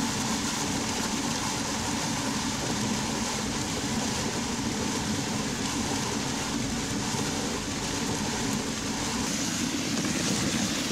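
Electric drum cement mixer running steadily, churning a batch of damp sand-cement screed.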